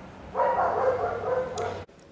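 A high-pitched, drawn-out cry lasting about a second and a half, which cuts off suddenly near the end.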